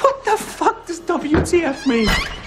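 A man's voice making drawn-out vocal sounds whose pitch wavers and glides up and down, with no clear words.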